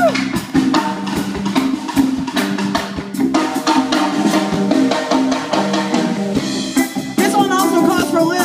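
A live band playing, with a drum kit beat to the fore over bass and guitars. A voice comes back in about seven seconds in.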